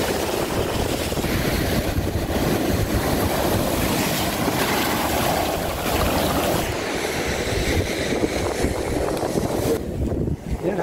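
Steady wind noise buffeting the microphone, with sea surf washing up the shore beneath it.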